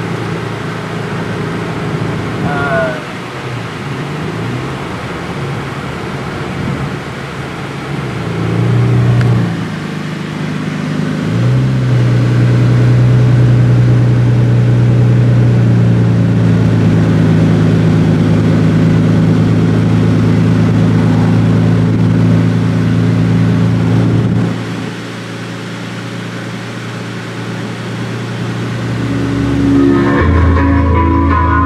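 Car engine and road noise heard from inside the cabin while driving. The engine drone climbs around ten seconds in, holds steady and strong, then drops off suddenly about two-thirds of the way through as the throttle eases. There is a brief high squeak early on.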